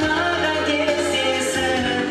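Male singer holding long notes into a handheld microphone over amplified pop accompaniment with a steady beat.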